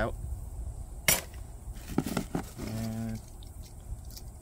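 Sharp metallic click about a second in, then a softer click about a second later, as a steel hive frame grip and other beekeeping hand tools are handled.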